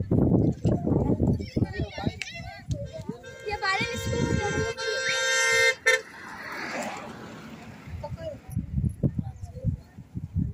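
A steady horn tone, held for about two and a half seconds and cutting off suddenly, amid people's voices.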